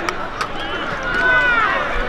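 Spectators in the stands shouting and yelling at a night football game, many voices overlapping. A single sharp click comes about half a second in.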